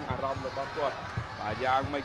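Match commentary: a voice talking continuously over a run of short, low thuds.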